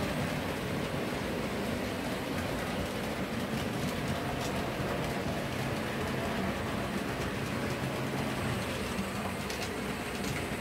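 Model railway trains running on the layout's track, a steady hum of motors and rolling wheels with a few faint clicks near the end.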